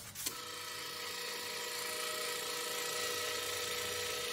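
A click, then a steady mechanical whir: a hum of several held tones over a hiss, slowly growing a little louder.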